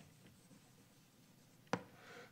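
Faint scratching of chalk writing on a blackboard, with one sharp tap near the end.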